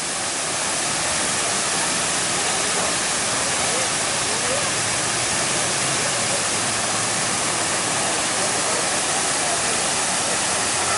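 Large ornamental fountain's jets splashing down into its basin: a steady, even rush of falling water.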